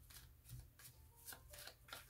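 Tarot deck being shuffled by hand: a faint series of soft, uneven card flicks and slides, about six in two seconds.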